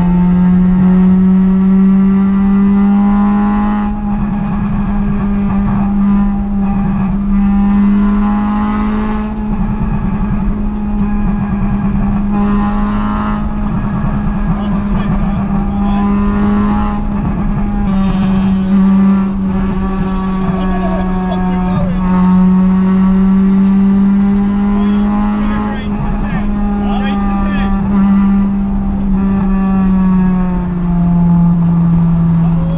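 Car engine droning steadily at motorway cruising speed, heard from inside the cabin over continuous road noise. Its pitch drifts only slightly.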